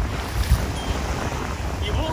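Wind buffeting the camera microphone: an uneven low rumble with a hiss over it, with a stronger gust about half a second in.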